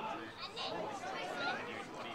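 Indistinct overlapping voices of spectators and players calling out during play, with no words clear.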